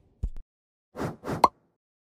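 Motion-graphics sound effects for an animated logo transition: a short low thump with a click, then two quick whooshes ending in a sharp, bright pop.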